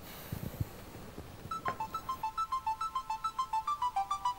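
Mobile phone ringtone starting about a second and a half in: a quick, repeating melody of short beeping notes, about six a second, preceded by a few soft knocks.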